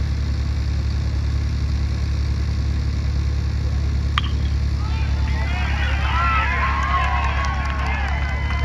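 A metal baseball bat pings once as it hits the ball about halfway through, and spectators start cheering and shouting about a second later, over a steady low rumble.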